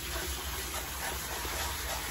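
Water running steadily from a salon shampoo-bowl hand sprayer, spraying onto wet hair and splashing into the basin as a steady hiss.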